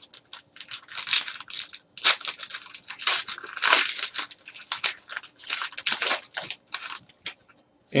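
Foil wrapper of a Panini trading card pack crinkling and tearing as it is ripped open and the cards are pulled out, in quick irregular rustles that stop about a second before the end.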